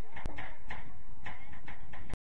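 Sideline sound of a night soccer match: faint voices and a run of short, sharp knocks about twice a second, with a sharp click about a quarter second in where the highlight clip cuts.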